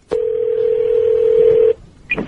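A telephone ringing tone heard down the caller's phone line as the call goes through: a click, then one steady, phone-thin tone lasting about a second and a half.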